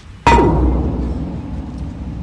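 Hollow steel rain-guard pipe, just unbolted from a gas-sphere safety valve, set down on the sphere's steel top: one loud metallic clang about a quarter second in, which rings and fades slowly.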